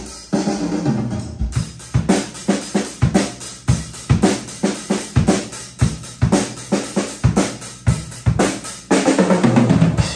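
Yamaha acoustic drum kit played in a steady rock beat of bass drum and snare strikes with cymbals, ending in a quick run of strikes just before the end.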